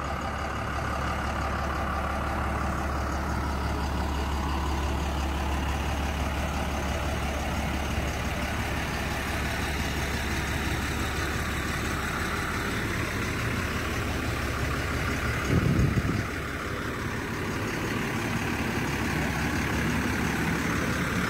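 Engine of an asphalt tank truck running steadily at idle, a continuous low hum. About three-quarters through there is a brief louder low rumble.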